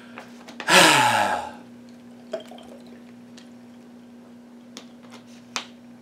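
A man's loud, breathy exhale that falls in pitch, like a sigh, about a second in. Then only a few faint mouth clicks and small ticks over a steady low hum.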